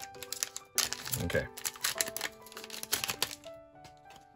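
Pokémon booster pack being opened: the foil wrapper crinkling and the stack of cards handled and shuffled, a string of quick crackles and clicks.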